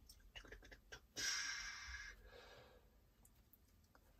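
Hands handling paper collage pieces on a journal page: a few faint taps, then a soft paper rustle about a second in that lasts about a second and fades.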